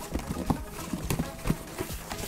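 Rummaging through a cardboard box: about half a dozen light, irregular knocks and clatters as items and packing material are handled and moved aside.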